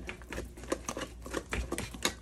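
Wire whisks beating cake batter by hand in mixing bowls, a quick irregular run of clicks and taps as the wires strike the bowls.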